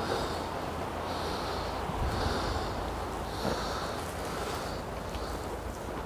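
Close breathing of a person walking, soft hissy puffs about once a second, over a low rumble of wind on the microphone.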